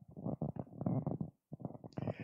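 Handling noise of a handheld microphone as it is passed from one person's hand to another's: a run of irregular low rumbles and knocks, with a brief break just after the middle.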